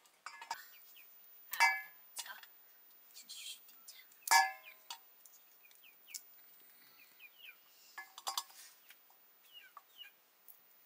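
A stainless-steel bowl clinking and ringing as dried meat is handled and cut over it. There are two loud ringing clinks, about a second and a half in and just past four seconds, with lighter taps and clicks between.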